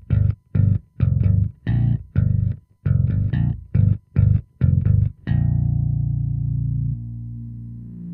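Electric bass played through the Line 6 POD Express Bass's synth effect on its octave setting: a quick run of short, separate low notes, then one note left to ring out, dropping in level about seven seconds in.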